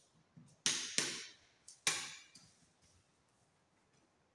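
Sharp plastic clicks and knocks from a twin switched socket outlet's faceplate being pressed and snapped into place on its surface-mounted box, three loud ones within about two seconds.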